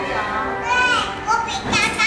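Young children's high-pitched shouts and squeals, three short outbursts, over faint steady background music.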